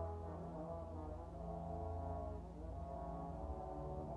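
Brass ensemble of trombones, French horns, tubas and trumpets playing long held chords over a strong low tuba line, the harmony shifting about two and a half seconds in.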